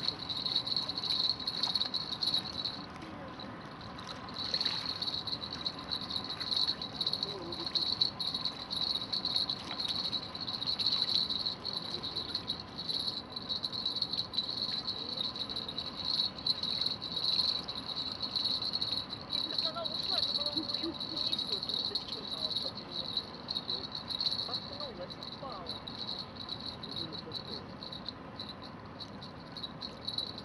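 Insects trilling steadily at one high pitch, with brief breaks now and then.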